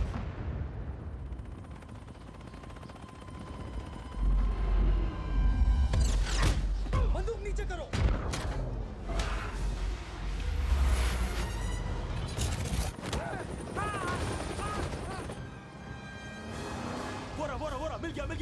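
Action-film soundtrack mix of music and sound effects: heavy low rumbles with sharp impact hits, loudest from about four seconds in to about thirteen seconds, then warbling effects near the end.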